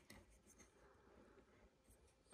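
Near silence, with a few faint ticks and rubs of hands handling the plastic backwash valve piston.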